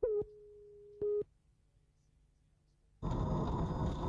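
Two short beeps from a TV countdown leader, a second apart, with the same tone held faintly between them. About three seconds in, loud steady engine and road noise inside a rally car's cabin begins.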